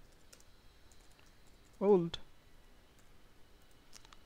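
Computer keyboard being typed on: scattered, faint key clicks at irregular spacing.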